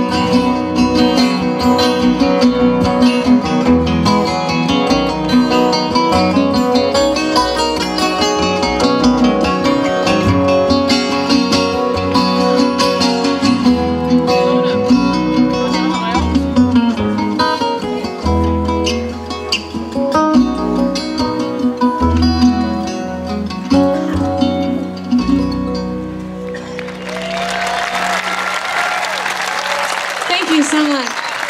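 Instrumental outro of a folk song on two acoustic guitars, one an archtop, over bass, winding down and ending about 26 s in. Audience applause and cheers follow to the end.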